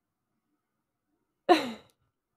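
A woman's single short laugh, one breathy falling "hah", about a second and a half in after dead silence.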